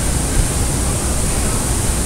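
A steady rushing hiss that is even across low and high pitches, with no distinct events.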